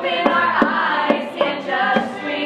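A group of teenage girls singing a song together in unison, with sharp percussive hits landing about twice a second under the voices.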